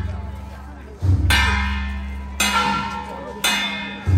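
Temple procession percussion: a ringing metal instrument struck about once a second, each stroke fading slowly, over a deep drum-like thump.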